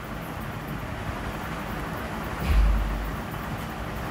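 Steady rushing background noise, with a short low rumble about two and a half seconds in.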